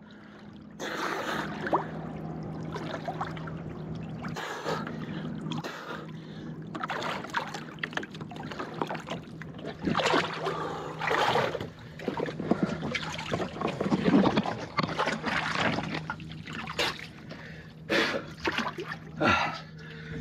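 Water sloshing and splashing in irregular bursts as a swimmer moves in the water around a capsized, swamped plywood sailboat, over a steady low hum.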